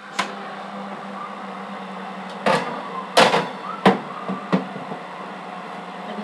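Enamel baking dish being set into an open oven: four or five sharp knocks and clatters of the dish and wire rack about halfway through, over a steady hum.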